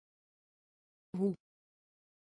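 Speech only: a single short word, the Dutch 'hoe', spoken once by a text-to-speech voice a little over a second in.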